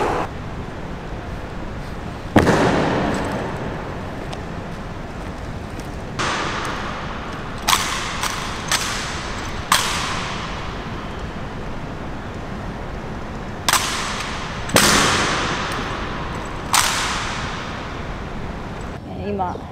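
Honour guard drill: about nine sharp, irregular strikes from stamping boots and rifle drill, each ringing out with a long echo in a large marble hall.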